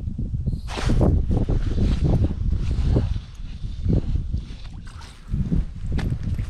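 Wind buffeting the microphone in an uneven low rumble, with brief rustles of clothing and handling, the loudest about a second in.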